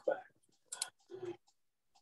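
A spoken word, then two soft clicks at a computer about a second in, as a search is entered.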